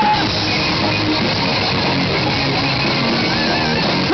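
Live rock band playing loud, with electric guitar prominent over bass and drums. A held sung note falls and ends right at the start.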